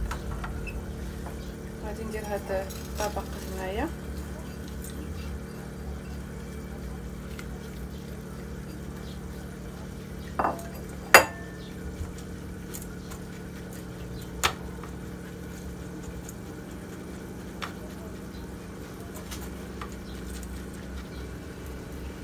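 A silicone spatula scraping and tapping as biscuit crumbs are moved from a bowl into a metal cake ring and spread. There are a few sharp clinks, the loudest about eleven seconds in, over a steady low hum.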